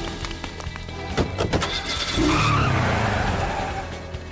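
Cartoon soundtrack: background music mixed with busy sound effects, with a louder, noisier stretch in the middle that has a vehicle or skidding character.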